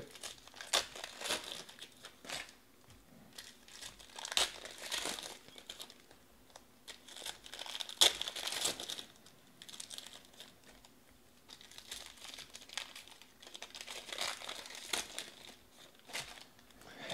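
Foil trading-card pack wrappers being torn open and crinkled by hand, in short irregular bursts, the loudest about four and eight seconds in and again near the end, with quieter rustling between.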